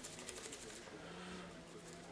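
Quiet room tone: a faint steady low hum with a few soft clicks.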